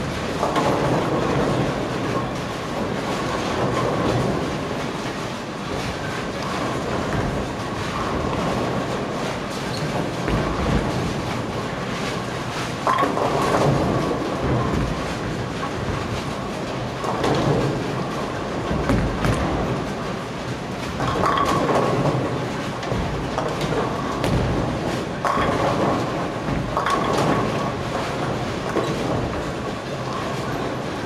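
Bowling alley din: bowling balls rolling down wooden lanes and pins crashing across many lanes, a continuous rumble that swells louder every few seconds.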